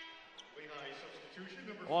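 Faint gym sound during a stoppage in a basketball game: distant voices on the court, with a single short knock about half a second in. A steady tone with many overtones fades out at the very start.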